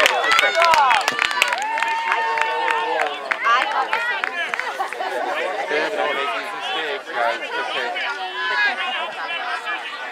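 Several voices talking and calling out at once, spectators and players chattering across a field, with one long drawn-out call about two seconds in and a few sharp claps near the start.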